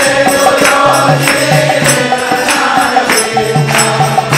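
Devotional kirtan music: a drum and hand cymbals keep a steady beat under group chanting of a mantra-like melody.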